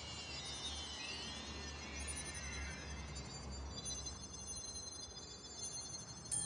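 Sparkle sound effect: many thin, high synthetic tones gliding up and down and crossing one another, settling in the second half into several steady high ringing tones, over a low hum.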